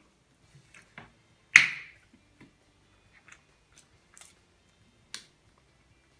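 Small scattered clicks and crackles of eating and handling food and a plastic squeeze bottle at a table, with one loud sharp snap about one and a half seconds in.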